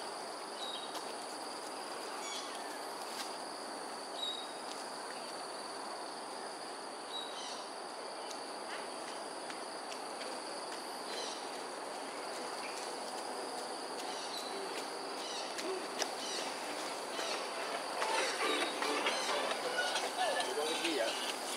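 Dawn outdoor ambience: a steady high-pitched insect drone over an even background hiss, with scattered short bird chirps. Louder, irregular sounds come in during the last couple of seconds.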